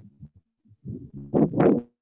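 Garbled, muffled speech coming through a poor internet call connection. It breaks up into short choppy fragments with dead-silent dropouts, the loudest stretch near the end, before cutting off.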